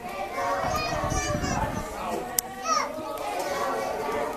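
Children's voices and chatter, with high calls rising and falling in pitch, and one sharp click a little after two seconds in.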